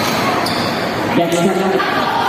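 A basketball bouncing on an indoor court during play, a couple of short knocks, over a steady din of players' and spectators' voices.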